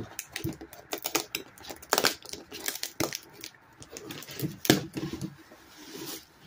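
A cardboard shipping box being handled and opened by hand: a run of irregular taps, clicks and scrapes of cardboard, with some rustling of packing paper.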